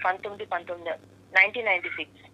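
Speech only: a caller's voice heard over a telephone line, narrow and thin-sounding, with a steady low hum underneath.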